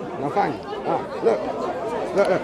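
Indistinct chatter of voices in a crowd, several people talking with no single clear speaker.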